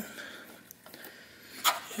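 Small plastic wiring connectors handled by hand: faint rustling and a couple of light ticks, then one sharper click near the end.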